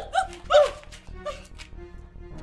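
A dog barking: three quick sharp barks in the first second and a fainter one a little later, over background film music with a steady low drone.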